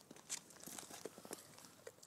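A young bullmastiff nosing at brick paving and stepping about: faint scattered clicks and soft rustling and snuffling, with the clearest click about a third of a second in.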